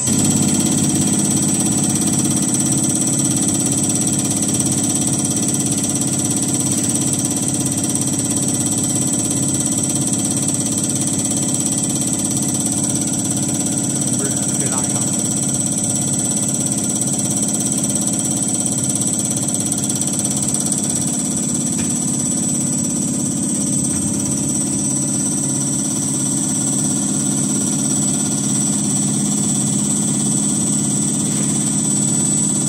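Common rail injector test bench running an injector test: its 5.5 kW electric motor driving the Bosch CP3 high-pressure pump runs steadily with a constant high whine, and a deeper hum comes in right at the start.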